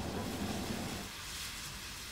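Faint steady hiss of a car driving, its tyre and road noise, which drops slightly about halfway through.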